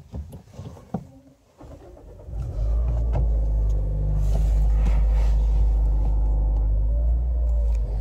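2020 Mazda 3 engine being push-button started, heard from inside the cabin: a few faint clicks, then about two and a half seconds in the engine fires and settles into a steady idle.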